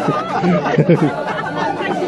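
Several people talking over one another, with bits of laughter.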